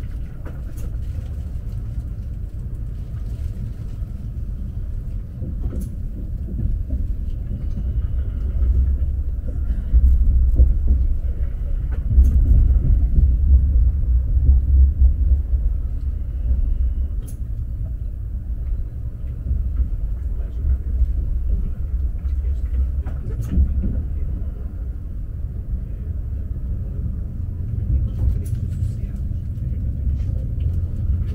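Alfa Pendular electric tilting train heard from inside the passenger cabin while running: a steady low rumble that swells louder for several seconds in the middle, with a few faint clicks.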